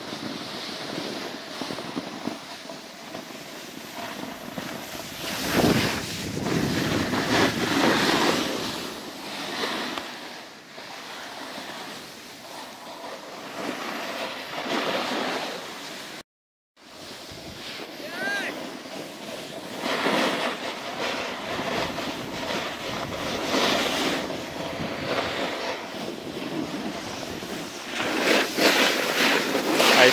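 Snowboard and ski edges sliding and scraping over packed snow, mixed with wind rushing on the microphone. The rush swells and fades in waves, and it drops out briefly about halfway through.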